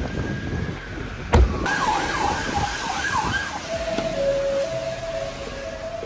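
Emergency vehicle siren: a fast up-and-down warble, then a steady two-tone alternation that carries on past the end. A single loud thump comes about a second and a half in, before the siren starts.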